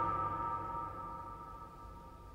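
A held keyboard chord of the dance score slowly fading away, its high tones lingering longest.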